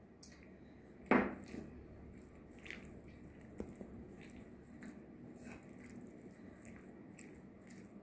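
Faint, soft, irregular sounds of a bare hand mixing raw boneless chicken pieces with chilli powder and spices in a ceramic bowl, with a single sharp knock about a second in.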